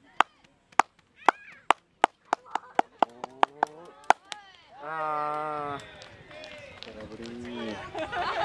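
A run of sharp claps near the microphone that starts slow and speeds up as the pitch comes, with a voice rising in pitch beneath them. After the batter's swing, a man's voice lets out one long held call, followed by a falling groan.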